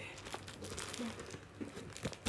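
Faint crinkling and rustling of plastic packaging handled by hand while a parcel is unwrapped, with a few small clicks.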